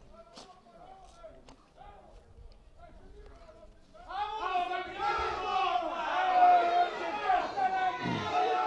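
Faint distant voices, then from about halfway through several people shouting at once across an open football pitch, their voices overlapping.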